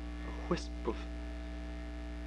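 Steady electrical mains hum in the recording, a low drone with several steady overtones. Two brief faint voice sounds come about half a second and a second in.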